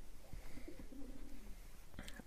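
Faint bird call in quiet room tone: one low note held for about a second, starting about half a second in.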